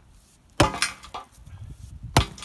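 Sledgehammer striking the concrete footing on a pulled chain link fence post: one hard blow about half a second in, followed quickly by two lighter knocks. The blows are aimed at the thin spot to break the concrete off the post.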